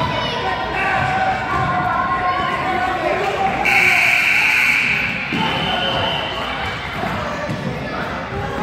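Children and spectators talking and calling out in an echoing gym during a youth basketball game, with a ball bouncing on the hardwood. About four seconds in a shrill high signal sounds for roughly a second and a half, then a thinner steady tone carries on for about another second.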